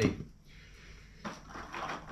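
Items being handled in a plastic tackle box tray: a short rustling, knocking clatter near the end, after a moment of quiet.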